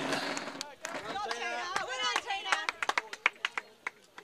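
Distant voices calling out on a field hockey pitch, followed by a quick run of sharp clicks in the last second or so.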